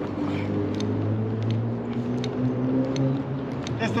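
A motor vehicle's engine running steadily in the street: an even low hum that holds throughout, with a few faint ticks over it.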